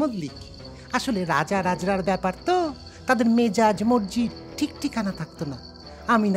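Crickets chirping steadily, a high, unbroken background effect under a voice speaking.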